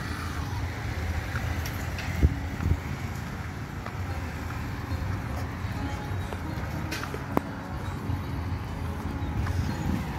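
Street traffic: a steady low rumble of passing road vehicles, with a few brief clicks.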